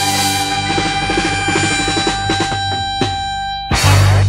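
Electric blues band (guitars, bass, piano, drums) playing the song's closing bars: a held chord, then a quick run of notes with drum strokes, then a loud final chord hit near the end that rings out.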